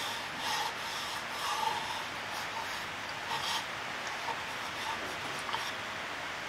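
A hand rubbing and brushing across the inside of a freshly turned wooden bowl, wiping away shavings: soft, intermittent rubbing swishes over a steady faint hiss.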